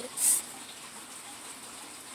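A short breathy hiss close to the microphone about a quarter second in, then faint steady background noise.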